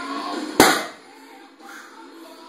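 A 585-lb barbell loaded with rubber bumper plates set back down onto wooden pulling blocks: one heavy thud about half a second in, over background music.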